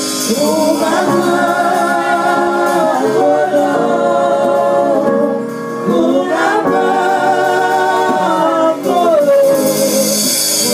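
Women singing together in harmony, live, in two long held phrases with a short break between them.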